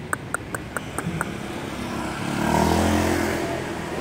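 A motor vehicle passes by on the street, its engine sound swelling to a peak about three seconds in and then fading. Before it comes a quick run of light clicks in the first second.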